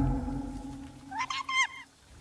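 The score dies away, then an animal gives a quick run of about four short, high-pitched calls a little past a second in.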